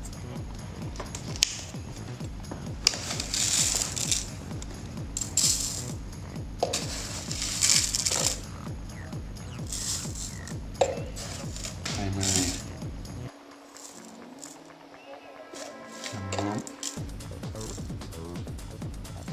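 A metal spoon scooping granulated sugar from a glass jar and tipping it onto the steel pan of a digital kitchen scale, with several sharp clinks of metal on glass and steel and the hiss of grains sliding off, over background music.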